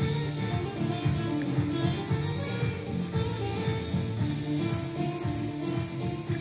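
Belly-dance music with a steady beat, with jingling over it.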